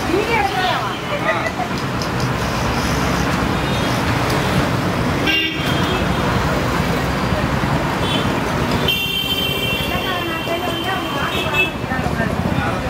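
Busy street traffic with motor vehicles running and horns sounding: a short honk near the middle and a longer horn held for a couple of seconds near the end, over voices.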